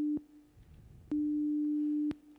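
A pure 300 Hz sine tone played back as a demonstration. It sounds twice: the first play stops just after the start, and the second begins about a second in and holds steady for about a second. Each play starts and stops with a click.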